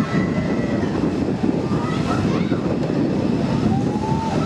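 Steady wind rumbling over the microphone as a rocket-ship ride carries the camera round at speed.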